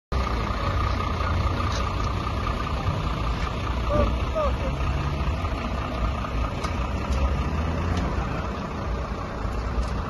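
Fire engine's diesel engine idling close by, a steady low rumble, with people talking in the background.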